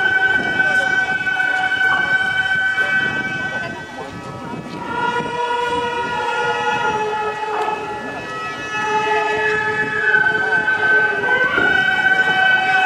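Gagaku wind ensemble playing a slow melody of long held reed and flute notes. The pitch steps to new notes about five seconds in and bends up shortly before the end.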